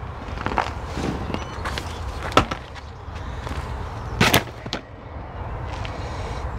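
Scrapes and knocks of compost being shovelled into a fabric air pot and worked by hand, with two sharper knocks about two and a half and four seconds in, over a steady low rumble.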